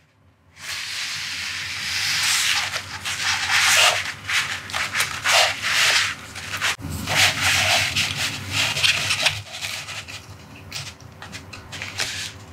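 Hands handling a fold-out cardboard Blu-ray disc case close to the microphone: continuous rustling and rubbing with short scraping strokes. It starts about half a second in and gets quieter over the last couple of seconds.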